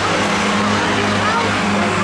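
Engines of Ministox (Mini-based stock cars) running around the oval as a steady drone, with people talking over it.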